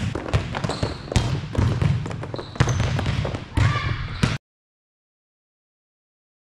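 Volleyballs being hit by hand and bouncing on a gym floor: many irregular smacks and bounces overlapping in a large gym. The sound cuts off suddenly about four seconds in.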